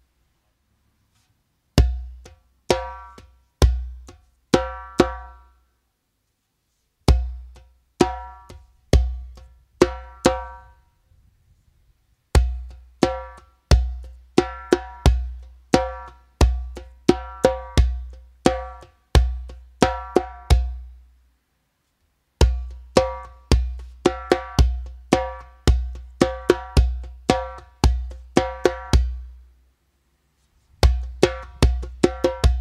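Remo djembe played with bare hands: a beginner rhythm of deep bass strokes followed by quiet and loud slaps, in the pattern bass, quiet slap, loud slap, quiet slap, then bass, quiet slap, loud slap, loud slap. It begins after a short silence, comes in short phrases with pauses at first, then runs on without a break for longer stretches.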